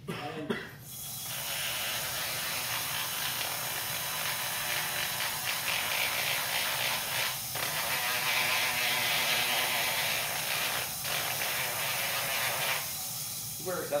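Foredom flexible-shaft carving tool spinning a 180-grit sanding drum against wood: a steady, gritty sanding hiss that starts about a second in, stops shortly before the end and drops out briefly twice along the way.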